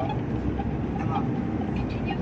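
Steady road and engine noise heard from inside a moving vehicle: a low rumble with a constant hiss of tyres on the road surface.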